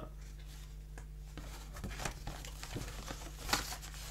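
Light rustling and crinkling of card pieces and a clear plastic cellophane sleeve being handled, with a brief louder rustle about three and a half seconds in.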